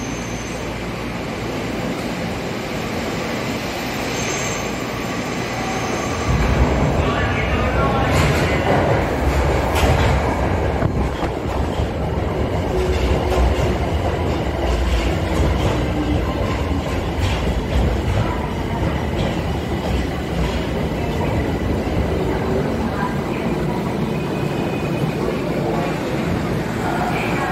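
Tokyo Metro Marunouchi Line subway train pulling into the underground platform. Its rumble builds sharply about six seconds in and is loudest as the cars pass, then eases as the train slows to a stop, with a low whine falling in pitch as it slows.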